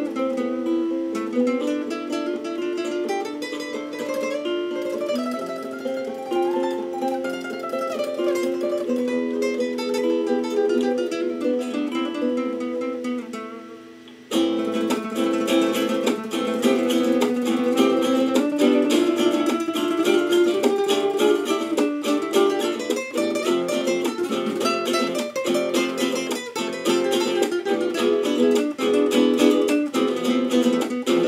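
Solo nylon-string classical guitar played in flamenco style, with picked melodic runs. About halfway through the sound dips, then cuts back in suddenly with louder, denser playing and sharp strummed strokes.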